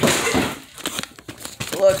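Rustling and crinkling handling noise as the phone camera is grabbed and carried, loudest in the first half-second, followed by a few light clicks and knocks.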